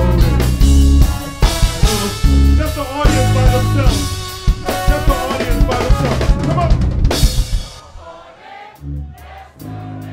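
Brass band music over a drum kit: horns with a heavy bass drum and snare. The band stops on a cymbal crash about three quarters of the way in, leaving only quieter, scattered sounds.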